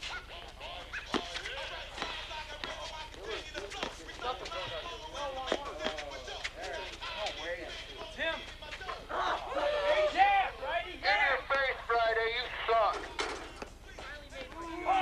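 Indistinct men's voices calling and shouting during a basketball game, louder and more excited in the second half, with a few sharp knocks in between.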